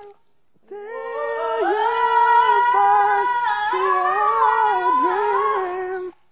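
A high voice singing without words, humming-like, in a slow wavering melody with long held notes. It starts about a second in and is loud.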